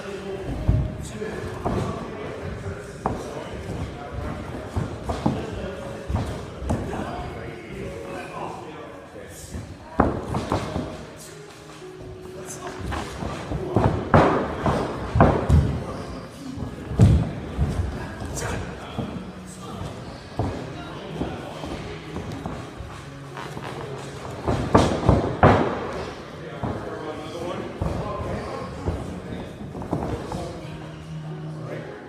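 Irregular thuds and slams of wrestlers' feet and bodies landing on a wrestling ring's canvas during Irish whip drills, the loudest in clusters about a third, halfway and five-sixths of the way through. Talking and background music run underneath.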